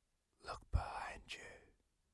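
Faint whispering: a few short, breathy whispered sounds about half a second to a second and a half in.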